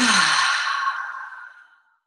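A long, audible sigh: a deep breath let out through the mouth, starting with a brief voiced note that drops in pitch and trailing off as a breathy exhale that fades away over about two seconds.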